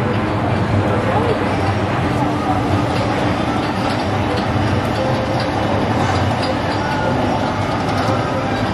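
Steady outdoor ambience of voices in the background over a low mechanical hum.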